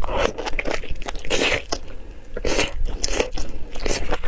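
Close-miked eating of a chunk of pork in chili sauce: a run of wet bites and chews coming in clusters of short, sharp bursts, the loudest about a second and a half in and again about two and a half seconds in.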